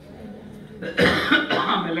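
A man coughing into a handheld microphone about a second in: a sudden loud, harsh cough with two sharp peaks close together.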